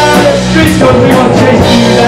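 Live rock band playing: a Pearl drum kit with Zildjian cymbals, electric guitar and bass guitar, with a singer holding a sung line over them.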